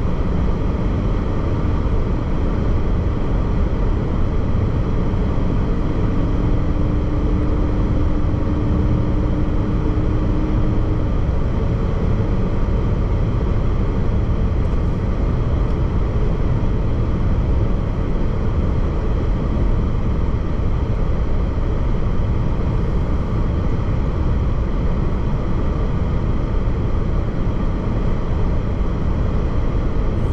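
Steady road noise of a car at highway speed, heard from inside the cabin: a constant low rumble of tyres and engine with no breaks. A faint steady hum is mixed in for a few seconds about six seconds in.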